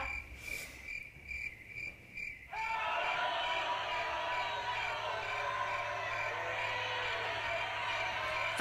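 Crickets chirping in a steady pulsing rhythm, then about two and a half seconds in a crowd starts cheering suddenly and keeps on steadily.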